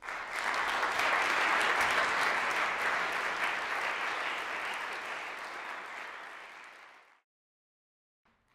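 Audience applauding after a percussion piece: the clapping breaks out all at once, is loudest in the first couple of seconds, then slowly thins and is cut off abruptly about seven seconds in.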